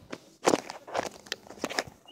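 A person moving about with a handheld phone: about five irregular scuffs and knocks, the loudest about half a second in.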